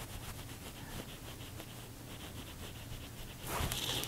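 Faint rubbing of a makeup brush against the skin of the jaw over low room noise, then a short breath in near the end.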